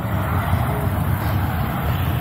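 A steady low rumble with a hiss above it: wind and handling noise on a handheld phone's microphone.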